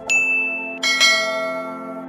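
Bell-like chimes struck about a tenth of a second in and again near the end of the first second, their tones ringing on and fading over a steady low musical drone.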